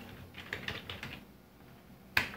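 Computer keyboard typing: a quick run of light key clicks in the first second or so as a word is typed in.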